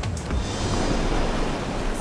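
Steady rush of water and spray from the wake of a pilot boat running at speed.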